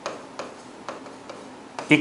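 Stylus tapping and clicking against the screen of an interactive whiteboard as a word is handwritten on it: a run of sharp, separate ticks, a few each second. A man's voice starts right at the end.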